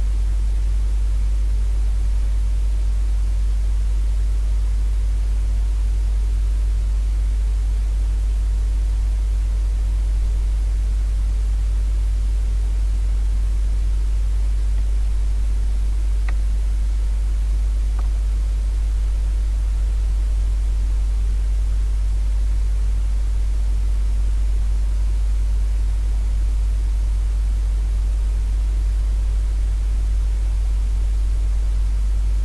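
A steady low hum with a layer of hiss, unchanging throughout. Two faint short ticks come about sixteen and eighteen seconds in.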